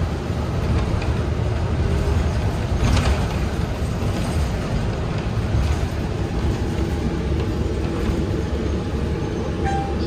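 Inside a moving city bus: the steady low rumble of the engine and road noise, with a brief click about three seconds in.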